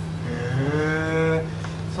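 A man's drawn-out vocal interjection of acknowledgement, a long 'heee', held at a steady pitch for about a second, over a steady low hum.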